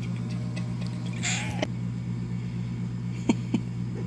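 A domestic cat gives one short, raspy meow about a second in, over a steady low hum. Two sharp clicks follow near the end.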